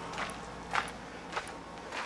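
Soft footsteps, three steps about half a second apart, over steady outdoor night background hiss.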